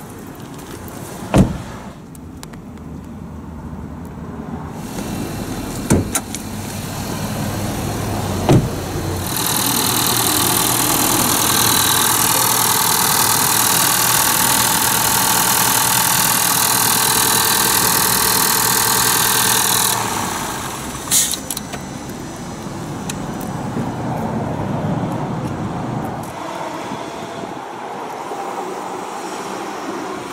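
A few sharp clicks over a low hum, then a loud, steady, hissing whir from the Honda Jade Hybrid's running engine bay for about ten seconds, which starts and stops abruptly. A quieter rumble follows.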